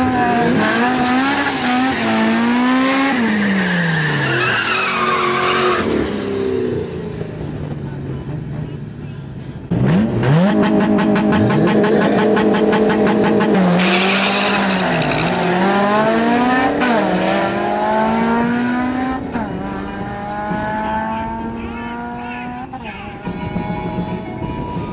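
Ford Mustang GT's V8 revving up and down in bursts, then held at high revs with tyre squeal as it launches. It then accelerates away, the pitch climbing and dropping at each gear change.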